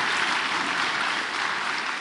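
Audience applauding, the clapping easing slightly near the end.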